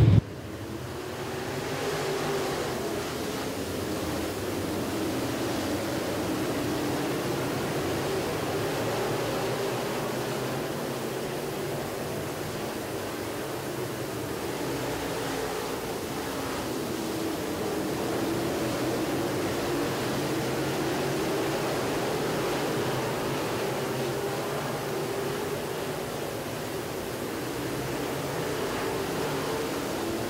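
A field of dirt-track Sportsman race cars running hard around the oval, heard as one dense engine noise from the pack. It builds over the first couple of seconds as the field takes the green flag, then holds steady, swelling and easing gently as the cars circle the track.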